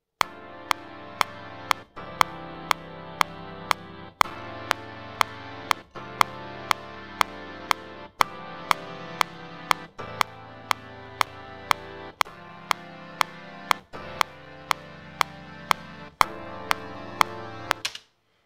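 Chords played on Studio One's Big Band multi-instrument, a layered preset of brass, woodwind, piano, choir and synth brass. Each chord is held and changes about every two seconds. Under them the DAW's metronome clicks about twice a second.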